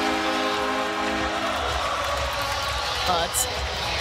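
Arena goal horn holding a single loud chord after a home goal, over crowd noise. It cuts off a little under two seconds in, and the crowd cheering carries on.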